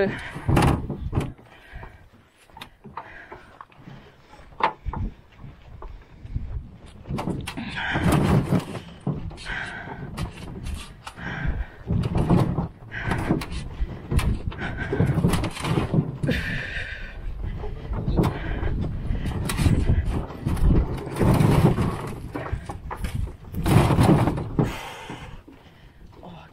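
Aluminium canoe on a portage cart being wheeled over a rough forest track, the hull rattling and rumbling in irregular jolts and knocks.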